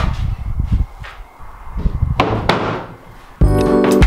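Wooden 2x4 board knocking and thudding as it is handled, with one louder thunk about two seconds in. Background music comes in suddenly near the end.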